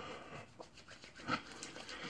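Hands rubbing hair cream between the palms, a faint soft rubbing with one slightly louder rub about a second in.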